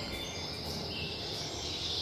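Steady, fairly quiet background noise with a few faint high chirps.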